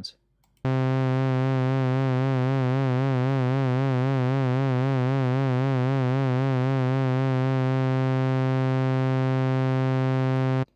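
Filtered sawtooth synthesizer note from SynthMaster 2.9, held on one low pitch and starting about half a second in. Vibrato from an LFO on the fine tune, driven by the mod wheel, gradually increases in intensity and then fades out near the end, leaving a steady tone with no more vibrato.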